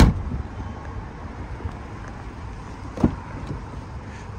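A car tailgate shuts with a sharp thump, then a second, lighter knock comes about three seconds later, over a low steady rumble.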